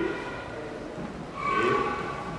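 Indistinct voices in a large, echoing room, with one voice rising briefly near the end.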